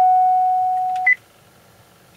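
A steady electronic tone from the vehicle's instrument panel holds for about a second and ends with one short, higher beep. It sounds as the set/reset button is pressed to switch the remote key learning mode on.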